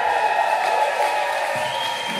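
A rock band's closing chord held and ringing out on guitars and keyboard, with the drums stopped; a higher note comes in near the end.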